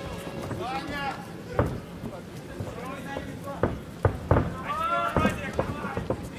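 Shouting from corner coaches and spectators, cut by several sharp thuds of punches and kicks landing as an MMA bout opens.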